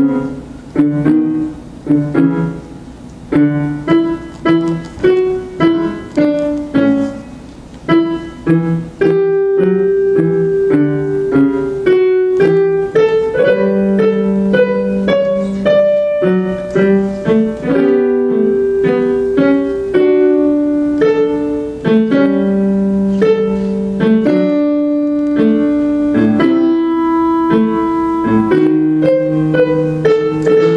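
Piano improvising a canon on a short theme hummed by the audience, two voices imitating each other. It begins with short, separate notes, then from about nine seconds in the notes overlap and run on without a break.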